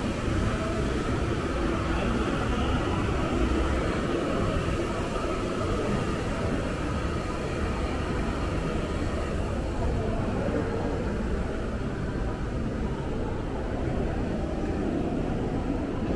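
Indoor shopping-mall ambience: a steady low rumble in the large hall with a faint murmur of distant voices.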